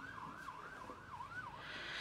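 Faint emergency-vehicle siren in a fast yelp, its pitch sweeping up and down about three times a second.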